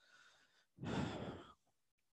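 A single breathy exhale, like a sigh into a close microphone, starting a little under a second in and lasting under a second.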